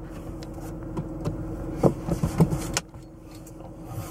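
A car's power window motor running for almost three seconds and stopping abruptly, over the car's steady interior hum; a few knocks come near the end of the run.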